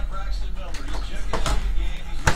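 A few sharp taps and clicks of trading cards and card boxes being handled and set down, with a background television's speech and music under them.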